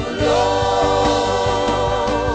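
Gospel worship music: a choir singing held, wavering notes over instrumental backing with a steady bass and beat.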